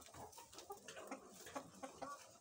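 Faint, soft clucking from a flock of hens, with scattered quick taps of beaks pecking at a mat of wheat hydroponic fodder.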